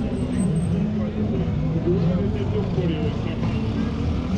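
Busy city street: people talking close by over a steady background of road traffic.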